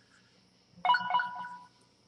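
Telephone ringtone: a short burst of electronic ringing notes starting a little under halfway in and dying away within about a second.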